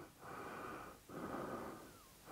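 Faint breathing close to the microphone: two breaths, each about half a second long.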